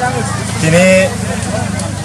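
Speech: a man talking, over a steady low hum.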